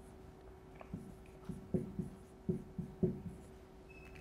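Dry-erase marker writing on a whiteboard: a series of short, quiet strokes and taps as letters are drawn, over a faint steady hum.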